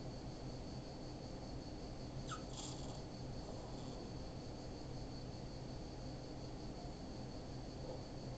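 Quiet room tone: a steady low hum with faint constant tones, and one faint short sound about two and a half seconds in.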